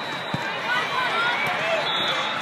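Volleyball rally in a large arena: a steady din of voices, short squeaks of shoes on the court, and a dull thud of the ball being played about a third of a second in.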